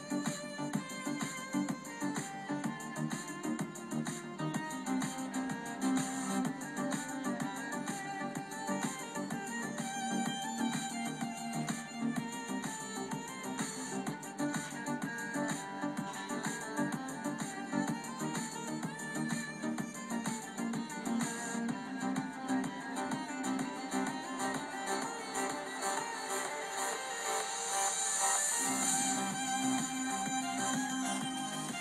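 Music played through a Philips bookshelf speaker driven by a homebuilt LM1875 gainclone amplifier, with little deep bass.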